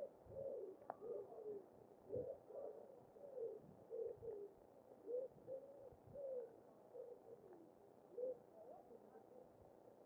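A pigeon cooing, a faint run of short low notes repeated two or three times a second, thinning out near the end.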